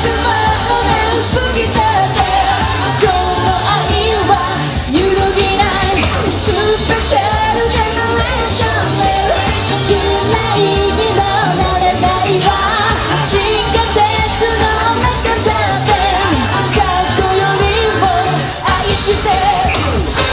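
Live J-pop performance: female singers singing into handheld microphones over a pop backing track with a steady beat.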